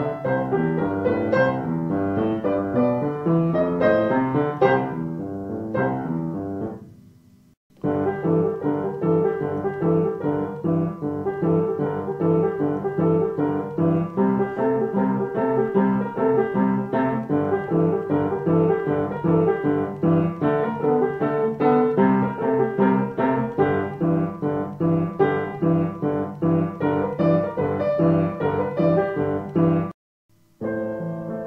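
Piano playing a lesson piece that fades out about seven seconds in; after a brief silence a second piece begins and plays on with a steady flow of notes until it stops at the very end.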